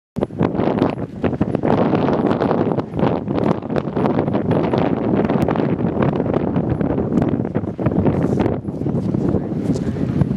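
Strong wind buffeting the camera's microphone in loud, uneven gusts.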